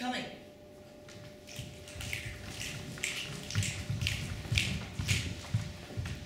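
Footsteps on a wooden stage floor: a run of quick, irregular steps beginning about two seconds in, each with a soft thud and a scuff.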